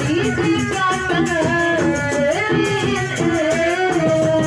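A woman singing a melody through a microphone and loudspeakers, with held, sliding notes, over live accompaniment of plucked strings and hand drum.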